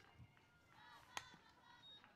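A single sharp crack of a softball bat meeting a pitch, a little over a second in: the ball fouled off. Otherwise near silence with faint distant voices.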